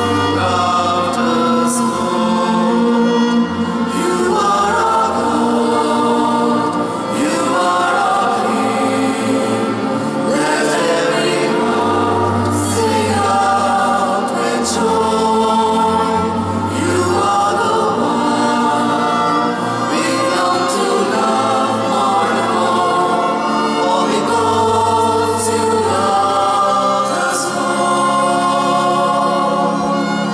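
A small choir singing a Christian hymn in parts, accompanied by a chamber string ensemble with a cello. The chords are long and held over a slow, low bass line, in a large stone church.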